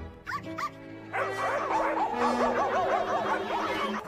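Cartoon soundtrack music with short, high yelping calls: two quick ones near the start, then a rapid run of rising-and-falling yips from about a second in.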